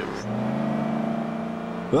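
A car engine running steadily, a low even drone.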